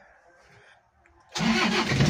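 Toyota Kijang diesel engine cranked cold by the starter motor, catching after only two turns about a second and a half in and running on. Starting this quickly is, to the mechanic, the sign of normal compression, a healthy starter motor and battery, and a sound Bosch injection pump.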